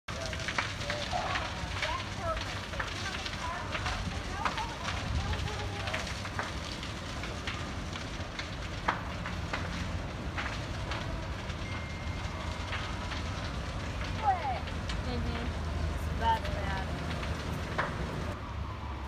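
Large fire burning through a garage and oil-company building: a steady low rumble with scattered crackles and sharp pops, a few louder pops about nine seconds in and twice more near the end.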